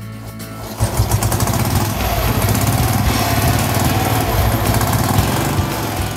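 The freshly rebuilt engine of a 1952 NSU 250 motorcycle, a single-cylinder four-stroke, catches about a second in after several failed attempts and keeps running at a steady, fast firing beat. It is the engine's first start after the rebuild.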